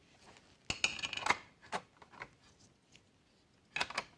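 USB flash drives being pushed into the USB-A ports of an aluminium docking station: a cluster of small clicks and light metallic rattles about a second in, then a few more single clicks near the end.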